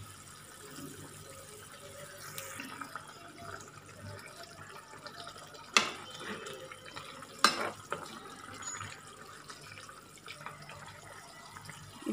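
Leafy greens boiling in water in a pan, with a faint steady bubbling. A metal ladle knocks sharply against the pan twice, about six and seven and a half seconds in.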